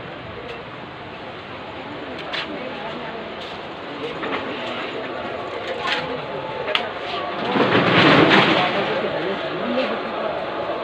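Busy bazaar ambience: indistinct chatter of many shoppers and shopkeepers with scattered clicks and knocks. A louder rushing noise swells for about a second three-quarters of the way in.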